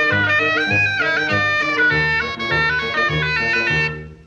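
Orchestral cartoon score: a reedy wind melody with a few gliding notes, in snake-charmer style, over bass notes pulsing about twice a second. It cuts off just before the end.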